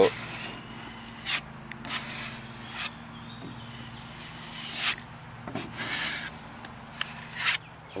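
Putty knife spreading filler over a fiberglass canoe hull: half a dozen short scraping strokes, irregularly spaced, over a faint steady hum.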